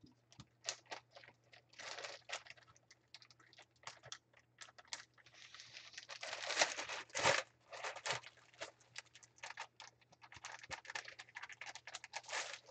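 Faint, irregular crinkling and rustling of packaging being handled, with scattered small clicks. The crinkling is busiest a little past the middle.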